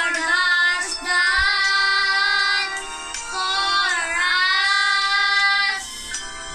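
Two young boys singing a slow worship song together, holding long notes that glide from one pitch to the next.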